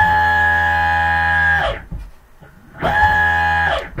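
Brushless electric motor driven by a 24-MOSFET VESC-based PV controller, spun up to full duty twice. It gives a loud, steady electric whine that rises quickly, holds for about a second and a half, then winds down. A second, shorter run of about a second follows.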